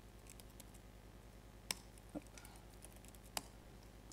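A few isolated laptop keyboard keystrokes, sharp clicks about a second and a half apart, over a faint steady hum.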